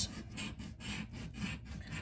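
A coin scraping the scratch-off coating off a paper lottery ticket in quick back-and-forth strokes, about five a second.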